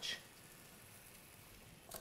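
Faint, steady simmering of pasta in a butter and pasta-water sauce in a frying pan, a soft even hiss with no distinct bubbles or clinks.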